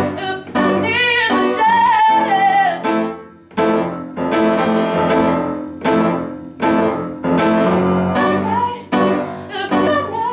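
A woman singing solo with vibrato over piano. About three seconds in the voice breaks off and the piano carries on alone in a steady pulse of struck chords, roughly one a second, before the singing comes back near the end.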